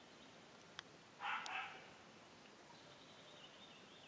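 A single short, harsh, bark-like animal call, about half a second long, a little over a second in, with a faint click just before it.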